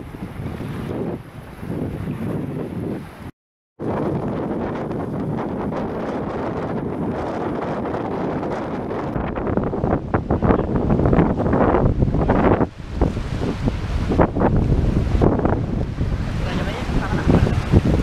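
Wind buffeting the microphone in uneven gusts over small waves washing onto a shallow sandy beach. The sound cuts out for a moment about three seconds in, and the gusts grow louder in the second half.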